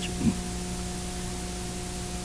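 Steady hiss and electrical mains hum of an old lecture recording, the hum made of several steady tones. A short trailing bit of voice falls away just after the start.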